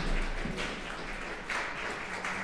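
Audience applauding, with a few footsteps on the wooden stage floor early on.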